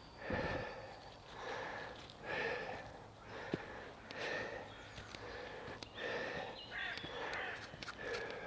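A man breathing hard while walking up a steep hill, with a heavy breath about once a second.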